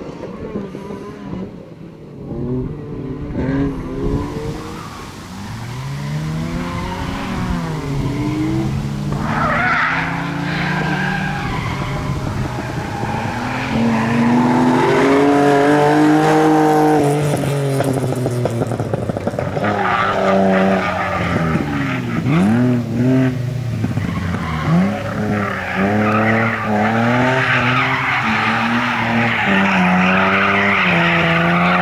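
BMW E36 competition car's engine revving hard, its pitch rising and falling again and again as the driver works the throttle, with tyres squealing as the car slides. It grows louder about a quarter of the way in and is loudest around the middle.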